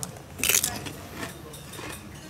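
A crisp, dried Handkäse chip bitten in the mouth: one short crunch about half a second in, after a small click at the start.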